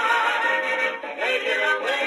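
A 1940s swing record with voices and band playing on an acoustic horn gramophone. The sound is thin and boxy, with no bass and little top.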